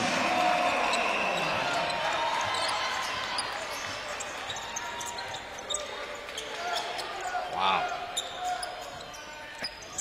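Arena crowd noise after a dunk, dying away gradually, with a basketball bouncing on the hardwood court in short knocks.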